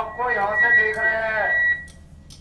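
A man's voice speaking, with a steady high-pitched tone under it. The voice stops shortly before the tone cuts off.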